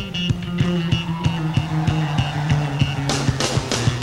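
Live jazz band playing: a held bass line under drum strikes about three a second. Cymbals wash in near the end. The saxophone is mostly silent here.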